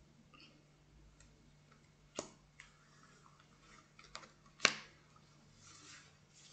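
Oracle cards being drawn from a spread and turned over onto the table: a few sharp card clicks over a faint rustle, the two loudest about two and a half seconds apart.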